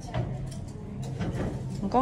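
Faint clicking and rustling of a dress strap's buckle being fastened by hand, then a woman speaks briefly near the end.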